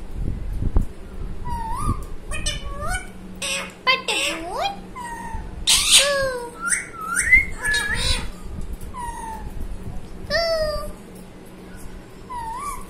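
Indian ringneck parakeet calling: a quick string of short whistled notes that swoop up and down in pitch, broken by a few harsh screeches, with a low thump or two of handling in the first second.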